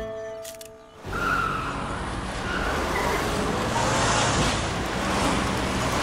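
Background music fades out. About a second in, cars start speeding past with a steady rush of engine and tyre noise.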